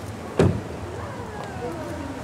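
A single heavy thump about half a second in, over a low murmur of voices and outdoor background noise.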